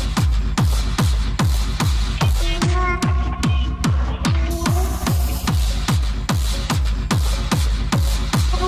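Techno from a DJ set: a steady four-on-the-floor kick drum, each kick dropping in pitch, about two beats a second, with hi-hat strokes and short synth stabs over it.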